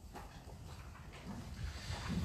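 Faint room tone in a hall, with a few soft clicks and a low sound building near the end.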